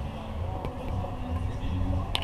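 Faint voices over a steady, uneven low rumble.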